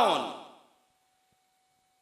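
A man's voice drawing out the end of a word, falling in pitch and fading within the first half second. Then near silence with a very faint steady hum.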